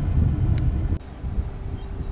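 Small outboard motor on an inflatable dinghy running under way, with wind rumbling on the microphone. About a second in, it gives way abruptly to quieter wind noise with a faint steady hum.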